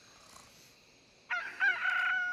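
Near silence for just over a second, then a rooster crows: one long call that rises at the start and then holds, marking daybreak.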